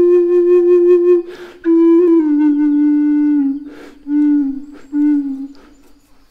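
Contrabass Native American-style flute (pimak) in A playing slow held notes that step downward in pitch. Breath sounds come between phrases about a second and a half in and again near four seconds, and the last notes fade away near the end.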